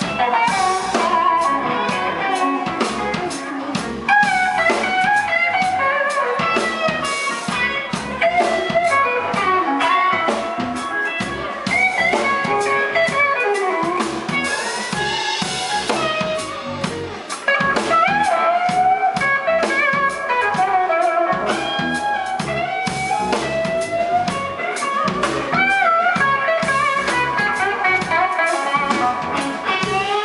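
A live blues band playing loudly: an electric guitar lead with bent and wavering notes over drums and rhythm guitar.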